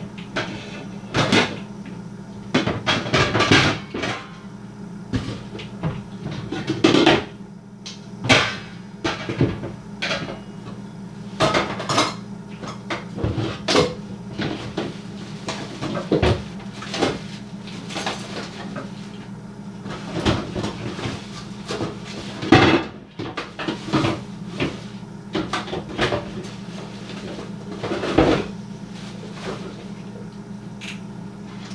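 Kitchen cupboards and drawers being opened and shut while their contents are rummaged through, giving irregular knocks and clattering of pots and utensils. A steady low hum runs underneath.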